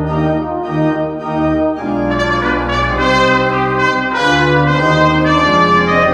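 Trumpet and French horn playing a melody together over organ accompaniment, in held notes that change about once a second. The brass grows brighter and a little louder about two seconds in.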